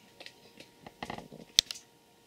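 Hands handling wiring and plastic connector blocks: a few light clicks and rustles, with one sharp click about one and a half seconds in.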